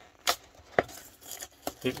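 Perforated tab of a cardboard box being torn open: two sharp tearing snaps about half a second apart near the start, then light rustling of the card.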